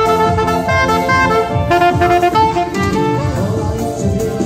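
Live dance band playing: a saxophone carries the melody over electric guitar and keyboard, with a steady drum beat.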